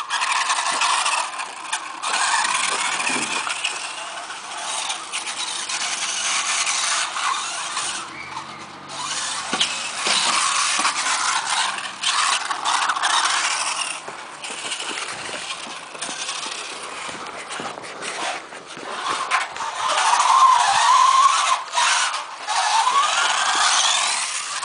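Radio-controlled mini truck driving on a dirt track. Its motor and gears give a high-pitched whine that rises and falls with the throttle, cutting out briefly now and then, with tyre noise on the dirt.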